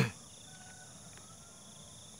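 Steady outdoor chorus of insects, an even high-pitched chirring in several bands, after a short laugh that cuts off at the very start.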